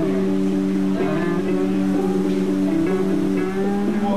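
Instrumental soundtrack music of a few steady, long-held notes, with no singing.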